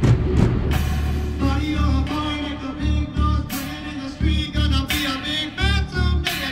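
Marching band playing a rock arrangement with drumline and amplified guitar: a hard drum hit at the start, then a wavering melodic lead over a pulsing low beat.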